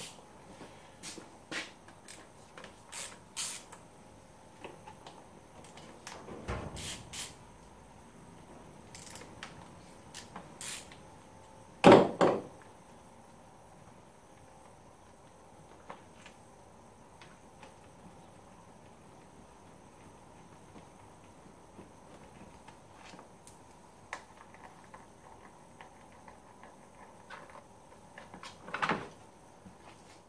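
Scattered clicks and knocks of hand tools being picked up and used on a quad bike's gear-selector linkage, with a louder double knock about twelve seconds in and a long quieter stretch after it.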